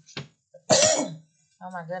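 A person coughs once, sharply, a little under a second in.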